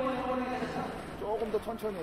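A man's voice talking: the coach addressing his players in a team huddle.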